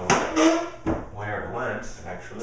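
Rummaging through a kitchen drawer for a spoon: two sharp knocks, one right at the start and one about a second in, among the rattle of the drawer and its contents, with some mumbling.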